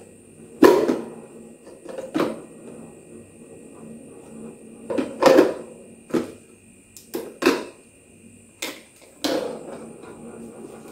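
Plastic parts of a drip coffee maker being handled: the filter basket lifted out and set back in and the hinged lid opened and shut, giving a string of short, sharp plastic knocks and clicks.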